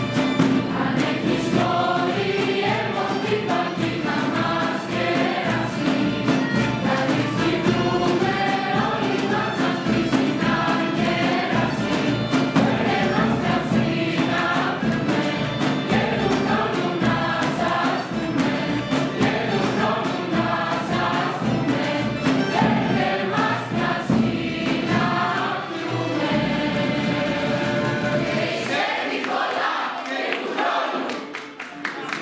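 Mixed youth choir singing Greek Christmas carols (kalanta), accompanied by a small traditional ensemble with violin. The song ends on a held note near the end, and clapping starts just as it stops.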